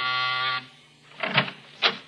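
The held chord of a radio-drama music bridge cuts off about half a second in. Two short knocks follow about half a second apart, a sound effect at the start of the next scene.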